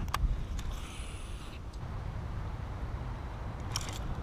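Fishing reel being cranked during a retrieve: a brief high whir about a second in, with a sharp click at the start and a few more near the end, over low rumbling handling noise.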